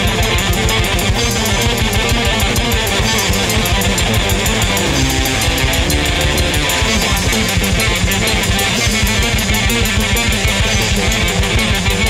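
Instrumental progressive rock track with electric guitar, bass and a fast, steady drum beat, played as a recording.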